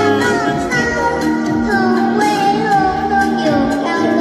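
A young girl singing a Vietnamese folk-style song over instrumental backing music, with the voice gliding between held notes.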